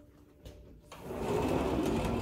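Sliding glass patio door rolling along its track, a steady rumbling rattle that starts about a second in.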